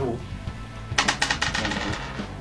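A small die rolled onto a table, clattering in a quick run of sharp clicks about a second in, over background music.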